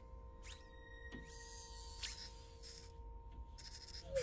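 Faint film-score drone: two steady held tones over a low rumble, with a few soft brief whooshing sweeps, from an animated film's soundtrack.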